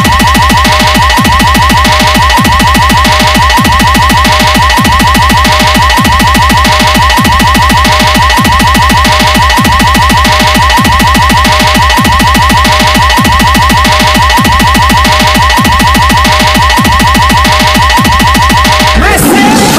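DJ competition 'hard bass toing' electronic effect: a heavily compressed bass pulse looping evenly, with a fast fluttering buzz of about eight strokes a second and a steady high tone over it, and no tune or vocals.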